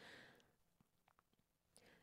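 Near silence: room tone, with a faint breath at the very start.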